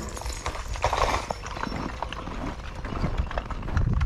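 Footsteps crunching on packed snow at a steady walking pace.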